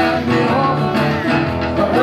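Live duo performing a pop song: a man singing lead into a microphone over electric keyboard accompaniment, with a plucked, guitar-like sound in the mix.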